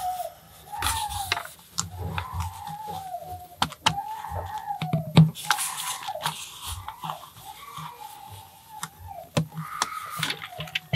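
A person's wordless tune under the breath: a string of wavering notes that slide and fall one after another. Light plastic clicks of LEGO bricks being handled and pressed together run throughout.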